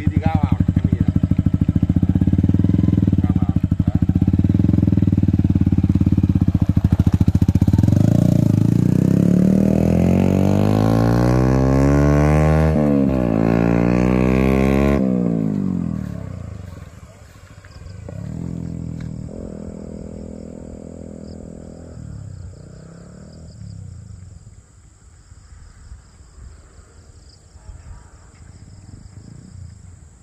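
A Yamaha sport bike's engine running steadily at low revs as the rider pulls away on the clutch, then revving up and down several times as it accelerates. The sound cuts off abruptly about halfway through, and afterwards a motorcycle engine is heard much more faintly in the distance.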